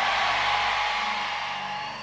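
A large congregation shouting "amen" together in a long sustained roar of voices that slowly fades, over a soft steady keyboard pad.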